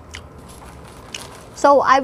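Close-up mouth sounds of someone chewing a mouthful of chicken: a few soft clicks and smacks. A woman starts speaking near the end.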